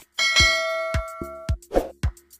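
A bell-like notification chime from a subscribe-button animation rings out just after the start and fades away by about a second and a half, over electronic background music with a steady kick-drum beat. A short swish follows near the end.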